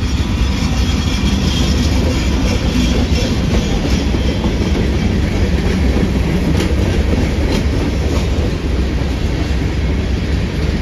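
BNSF freight train with diesel locomotives passing close by: a steady, loud low rumble with the clickety-clack of wheels over the rail joints.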